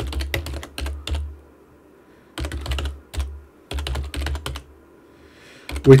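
Typing on a computer keyboard: three short runs of rapid keystrokes with brief pauses between them, as a line of code is entered.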